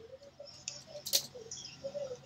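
Faint scattered clicks and ticks over a video-call line, with one sharp click a little past the middle.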